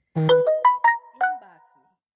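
Short electronic chime, like a phone ringtone or notification: about five quick ringing notes climbing and then dropping, overlapping and fading out within two seconds.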